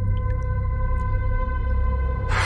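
Ambient soundtrack drone: one held, evenly pitched tone over a deep steady rumble, with a few faint water drips.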